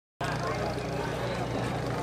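An engine running steadily at a low, even idle, with people talking over it.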